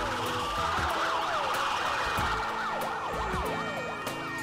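Several sirens wailing at once, their pitches rising and falling and crossing over each other, over a low beat that thumps about once a second.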